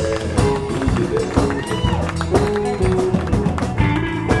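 A live blues band playing: an electric guitar lead with held notes that bend in pitch, over drums, electric bass and keyboard.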